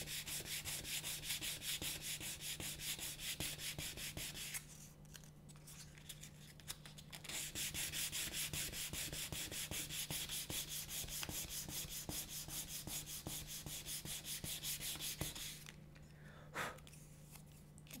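Split piece of reed cane being sanded on its inside with fine-grit sandpaper: quick, even back-and-forth rubbing strokes, a pause of a few seconds a little after the first quarter, then a second long run of strokes that stops a couple of seconds before the end. The sanding smooths the ridges and bumps off the inside of the cane for a double reed.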